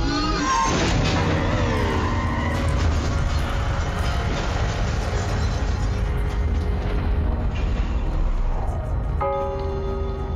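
Dark cinematic score music. It opens with a sudden boom-like hit and falling pitch swoops, continues as a dense, loud texture, and settles into a sustained chord about nine seconds in.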